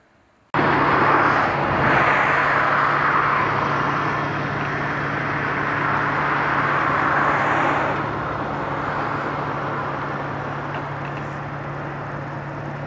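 Outdoor ambience that starts suddenly, with a loud rushing noise over a steady low engine hum. The rushing eases off about eight seconds in.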